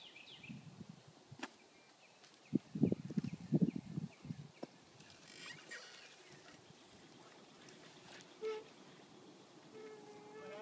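Faint outdoor woodland sound: birds chirping in short falling notes, with a burst of low thumping and rustling around three to four seconds in.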